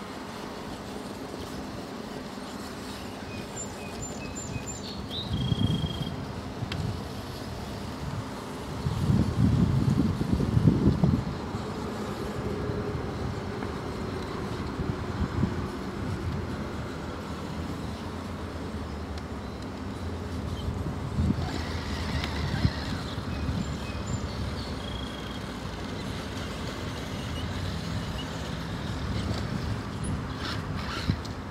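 Axial SCX6 1/6-scale RC rock crawler's electric motor and geared drivetrain whining as it crawls up over rocks, with several louder surges of throttle, the strongest about nine to eleven seconds in.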